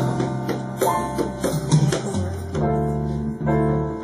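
Live band playing an instrumental passage with no singing: held piano or keyboard chords that change every second or so, with light percussion.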